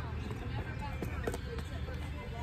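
Shoe footsteps on brick steps, a few sharp steps about a second in, over a steady low background rumble.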